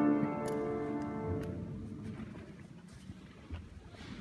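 Mixed a cappella vocal ensemble holding a sustained chord that dies away about a second and a half in, leaving quiet room tone with a few faint clicks.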